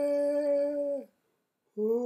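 A voice singing a long, steady held note with no words, which falls away about a second in; a second held note starts near the end.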